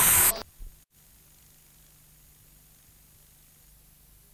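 A loud noisy whoosh from a TV channel's transition sting cuts off abruptly about half a second in. After it only a faint hiss and a low steady hum of the recording's background noise remain.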